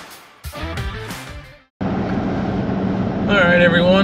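Background music fading out, then after a brief cut to silence a steady drone of road and engine noise inside the cab of a pickup truck towing a heavy fifth-wheel trailer at highway speed; a man starts talking near the end.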